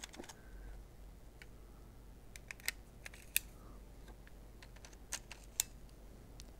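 A few sharp, irregular clicks of a Meike extension tube set and the 16-50 mm kit lens being twisted onto and locked into a Sony a6000's E-mount bayonet.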